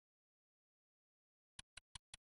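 Silence, then about a second and a half in a fast, even ticking starts, about five or six sharp ticks a second: a clock ticking sound effect.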